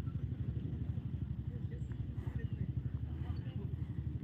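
An engine idling steadily with a low, fast throb, most likely the parked pickup truck's. Faint voices can be heard behind it.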